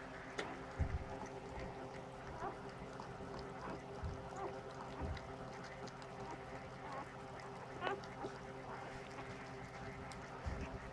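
Newborn standard poodle puppies giving a few short, high squeaks a second or so apart, over a faint steady hum, with a couple of soft bumps as they are handled.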